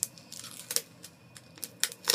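A folded paper instruction label being lifted and peeled open from a LiPo battery's wrapper: a series of short, sharp crackles and clicks.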